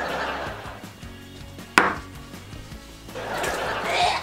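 A small glass banged down hard on a wooden table: one sharp knock a little under two seconds in. Breathy gasps around it from someone who has just downed a shot of hot sauce.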